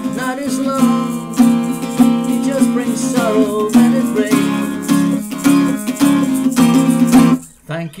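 Acoustic guitar strummed as a song accompaniment, with a brief drop-out near the end just before singing comes back in.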